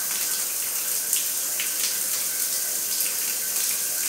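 Shower water spraying steadily onto a tiled bathroom floor and a pair of young parakeets, a steady hiss broken by a few short sharp spatters.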